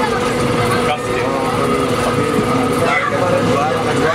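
Steady running noise inside a passenger train coach: a constant rumble with a few unchanging hum tones running underneath men talking.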